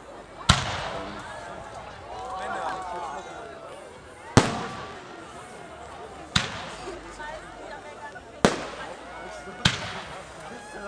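Aerial firework shells bursting: five sharp bangs, each followed by an echoing tail, the first about half a second in and the last two close together near the end. Spectators' voices chatter between the bangs.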